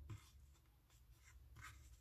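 Near silence, with a few faint rustles and a small click of fingers handling a thread tassel as its tie is slid up snug.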